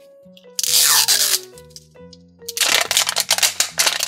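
Background music with held notes, over the crackle and tear of a toy surprise ball's outer wrapper being handled and peeled back: a short rustle about a second in, then dense crackling from about two and a half seconds in.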